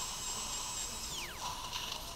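High-speed surgical drill whining steadily at a high pitch, then spinning down with a falling pitch a little after a second in.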